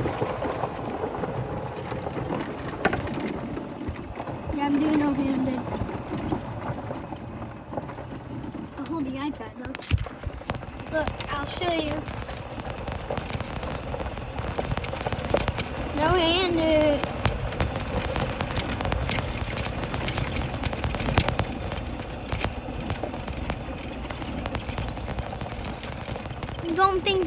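Golf cart driving, a steady rough noise with occasional knocks and one sharp knock about ten seconds in. A child's voice makes brief sounds a few times.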